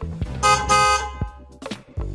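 Two short honks of a vehicle horn, the same pitch each time, played as a sound effect over background music with low sustained notes.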